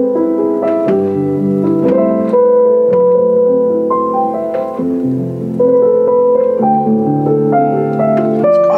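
Kemble K131 upright piano played in slow chords and melody notes, with the middle practice (celeste) pedal down so a felt strip sits between the hammers and the strings, giving a softened, muted tone.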